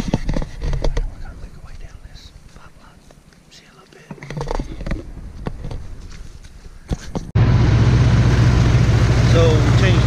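Footsteps and camera-handling knocks through wet grass, uneven and fairly quiet. About seven seconds in, this cuts abruptly to a side-by-side utility vehicle's engine running steadily and loudly, heard from the seat, with a man starting to talk near the end.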